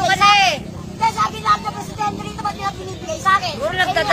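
Loud, excited speech from a man, with other voices around him; the pitch swoops up and down at the start and again near the end.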